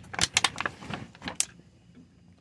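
A quick run of sharp clicks and small metallic rattles, things being handled inside a car, over the first second and a half, then it goes quiet.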